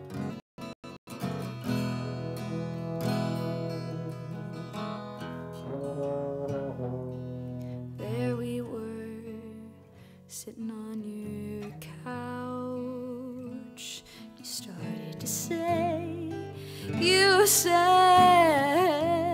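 Acoustic guitar strummed chords opening a song, after a few short taps at the start. A held melody line with vibrato comes in over it and is loudest near the end.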